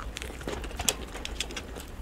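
Close-miked mouth sounds of biting into and chewing a samosa's crisp pastry, sped up to three times speed: a rapid run of small crunches and wet clicks, the sharpest about halfway through.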